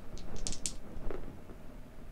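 Two plastic Blood Bowl block dice rolled onto a gaming mat: a quick run of light clicks as they tumble, with one last click about a second in as they settle.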